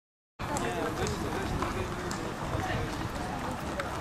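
Background chatter of several voices, starting about a third of a second in, with a few faint sharp clicks.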